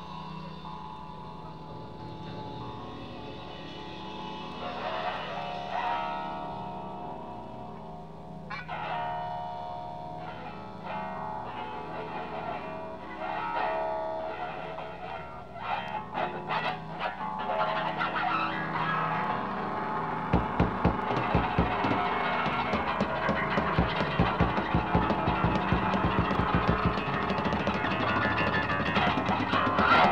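Distorted electric guitar through effects, played loosely in a pre-set soundcheck warm-up: held, wavering notes at first, growing louder and busier, with rapid hard hits joining in from about twenty seconds in.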